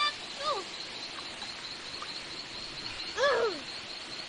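Shallow forest stream running, with a thin, steady high-pitched drone in the background. Two short vocal exclamations break in, a brief one about half a second in and a louder one near the end.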